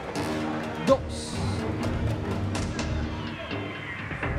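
Background music of held tones with a few percussion hits, under a countdown voice saying "two" about a second in, followed by a brief hiss.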